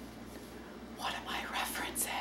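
Low room hum, then from about a second in a woman's breathy, whispered vocal sounds, short airy bursts close to the microphone.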